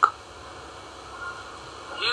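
A pause in a man's speech, filled with faint, steady background hiss. A word ends right at the start.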